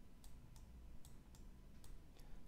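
Faint, irregular clicks, about half a dozen, of a stylus tapping on a tablet screen while writing by hand, over a low steady room hum.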